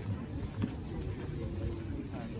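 Outdoor beach ambience: a steady low rumble with faint voices of people in the distance.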